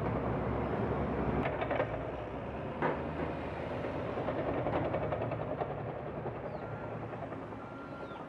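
Heavy diesel machinery and dump trucks running in a steady low rumble, with a couple of faint knocks in the first few seconds; the rumble slowly fades over the second half.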